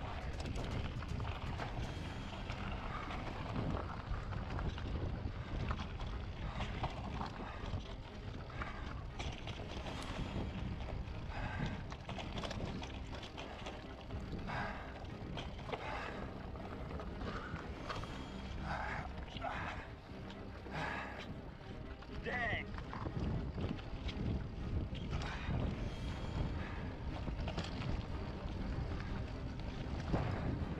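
A mountain bike rolls fast over rough dirt singletrack: a steady rumble of tyres and trail noise, with frequent short rattles and knocks from the bike over bumps and wind buffeting the microphone.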